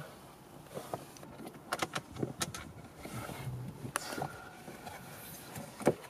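Scattered light clicks and taps of a Torx tool working on the screws and plastic mount of a car's floor-hinged accelerator pedal, with a sharper click just before the end.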